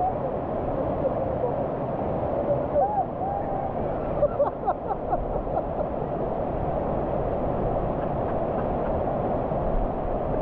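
Waterfall water rushing steadily over rock close to the microphone. Short gurgles and splashes come over the top between about three and five seconds in.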